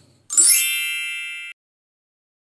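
Bright chime sound effect: a quick rising shimmer into a high ringing ding that fades for about a second and then cuts off suddenly.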